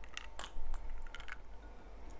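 Drinking from a glass of iced drink: a few short sips, mouth clicks and glass clinks, then the glass set down on the table.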